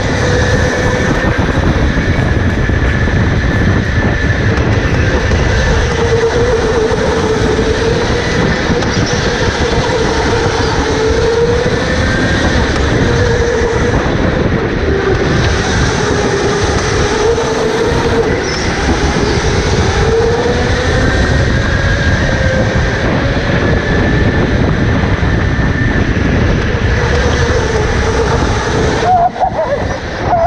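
Onboard sound of a go-kart lapping a track: a steady motor whine that drifts up and down in pitch with speed, over a heavy rumble of chassis, tyres and wind.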